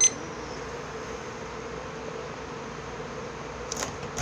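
Steady hum from a room appliance, with a sharp click right at the start and a few faint knocks near the end.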